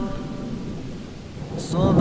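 Rain and thunder ambience: a steady low rumble under a soft hiss, heard in a pause between chanted lines. Near the end the chanting voice comes back in, opening with a sharp 's'.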